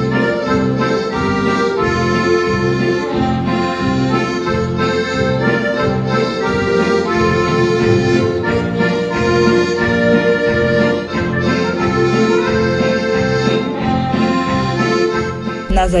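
Three accordions playing a tune together in held chords, over a steady, evenly pulsing bass beat.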